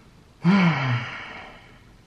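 A man's single voiced sigh about half a second in, its pitch rising briefly and then falling, trailing off as breath.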